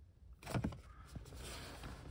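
Brief handling noise from a small cardboard box and the filming phone being moved inside a car: a short rub and knock about half a second in, a fainter tap a little later, over quiet cabin hum.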